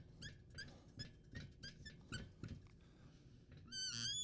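Faint squeaking of a dry-erase marker on a whiteboard as words are written: a quick run of short squeaks, one with each pen stroke, and near the end one longer squeak that rises and falls in pitch.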